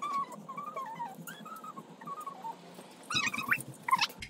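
High, wavering whines from an animal, with a louder, sharper cry about three seconds in.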